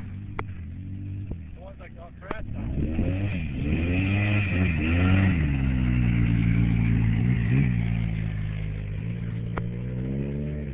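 Polaris Sportsman 800 ATV's twin-cylinder engine being ridden past, revving up and easing off several times with the pitch climbing and dipping. It is loudest as it passes, then settles to a steadier run as it moves away.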